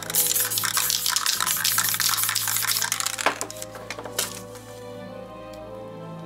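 Aerosol spray paint can hissing in a continuous spray with short crackles, stopping about four and a half seconds in, over background music.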